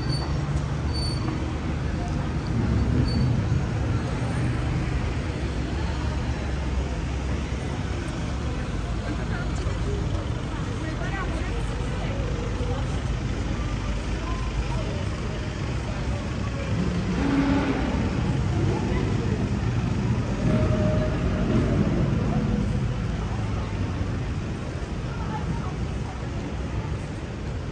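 Busy city street ambience: a steady rumble of passing traffic, cars and buses, with the voices of passers-by talking. It swells a little about two-thirds of the way through.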